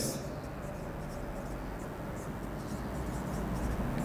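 Marker pen writing on a whiteboard: a run of faint, short strokes as a word is written out.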